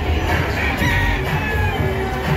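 Background music, with a rooster crowing once for about a second partway through.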